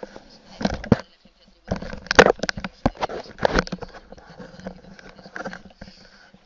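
A live radio stream playing from a computer's speakers and picked up in the room, a broadcast voice in short bursts.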